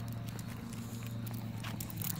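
Footsteps and dogs' claws ticking irregularly on an asphalt path during a leashed walk, over a steady low hum.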